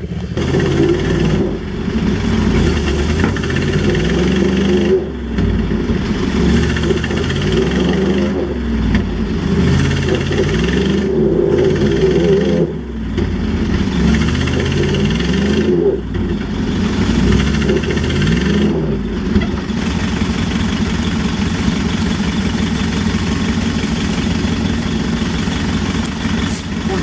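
Engine revving in repeated surges, its pitch climbing and dropping every two to three seconds, then running steadily for the last several seconds: an engine working under load in a tow-strap pull to free a stuck backhoe.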